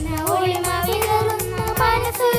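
Children's choir singing a melody with long held notes, over an instrumental accompaniment with a steady beat.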